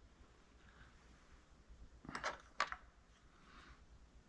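A metal sculpting tool being picked up: two short clicks about half a second apart, a little past halfway.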